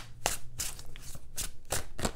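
A tarot deck being shuffled by hand: a series of short, soft card strokes, about two a second.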